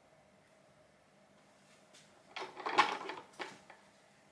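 Quiet room tone, then a little past halfway a brief clatter lasting about a second: a plastic soap-batter bucket with a wire handle being shifted and knocked about over wooden loaf moulds.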